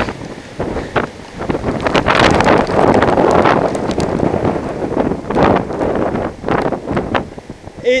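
Storm-force gusting wind buffeting a helmet-mounted camera's microphone, with heavy rain falling, in loud irregular surges and brief lulls shortly after the start and just before the end.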